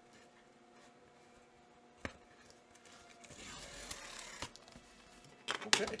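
A taped cardboard mailer being pried open by hand: a single click about two seconds in, scraping and rustling of cardboard around the middle, and sharper tearing of tape near the end.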